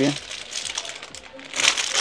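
Clear plastic bag around a pack of pens crinkling as it is picked up and handled, loudest near the end.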